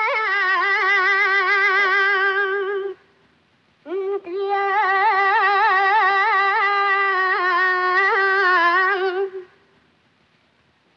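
A boy's high voice singing alone, long held notes with heavy vibrato and ornaments, in two long phrases: the first breaks off about three seconds in, and the second starts a second later and runs until near the end.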